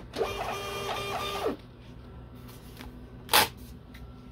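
Desktop thermal shipping-label printer printing a label: a stepped mechanical whir of its feed motor lasting about a second and a half. About three and a half seconds in comes one brief sharp noise.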